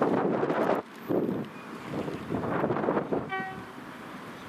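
A single short toot on the horn of Class 60 diesel locomotive 60040 as it approaches, coming near the end. Before it there are swells of wind noise on the microphone that rise and fade every second or so.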